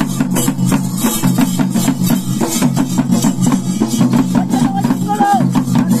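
Fast, continuous drumming on several barrel drums played together, over a steady low drone. A brief falling high tone sounds near the end.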